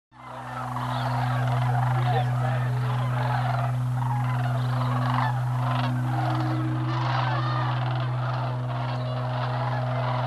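A large flock of sandhill cranes calling together, many overlapping calls, over a steady low hum. The sound fades in at the start.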